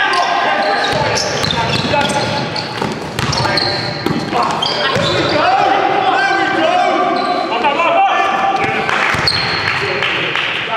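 Basketball game in an echoing sports hall: players' shouts and calls over one another, with the ball bouncing on the court floor.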